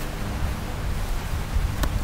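Wind buffeting an outdoor microphone: an uneven low rumble with a steady hiss above it and a couple of brief clicks near the end.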